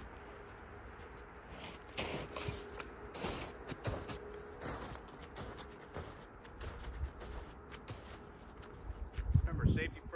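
Footsteps crunching through snow at an uneven pace, walking away, with a heavier thump near the end as he steps up onto the logs.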